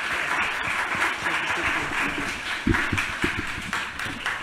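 Audience applauding steadily, with a couple of low thumps a little past halfway through.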